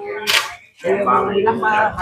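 People talking, with a short sharp click-like noise about a third of a second in.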